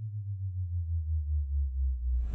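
Synthesized low electronic drone from a logo sting: a steady, slightly pulsing low hum with a faint tone gliding slowly downward.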